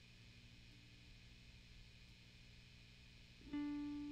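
Electric guitar: a faint steady low hum, then about three and a half seconds in a single picked note rings out loud and sustained.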